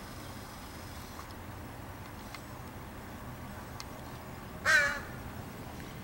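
A crow gives a single short caw about three-quarters of the way through, over faint steady background.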